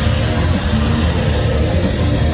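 Live heavy metal music played at concert volume, with a heavy, dense low end, heard from within the crowd.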